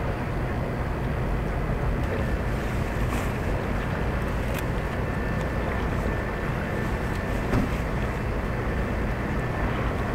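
Steady low rumble of ship engines running, with a faint steady whine above it and a few light clicks.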